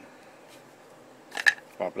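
A single sharp plastic click about one and a half seconds in as a Mora Companion knife is popped out of its moulded plastic sheath.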